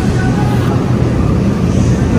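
Steady low hum and rumble of supermarket background noise.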